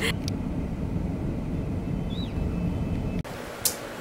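Low, steady rumble of a car's engine and road noise heard from inside a moving taxi. It cuts off suddenly about three seconds in, giving way to quiet room tone with one sharp click near the end.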